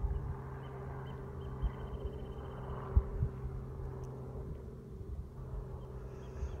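A steady low hum holding a few even tones, with a faint high trill about two seconds in and a sharp low bump about halfway through.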